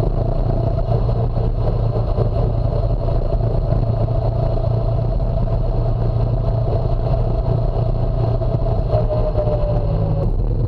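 Phatmoto All-Terrain motorized bicycle's small four-stroke engine running steadily under way. Its pitch drops a little near the end.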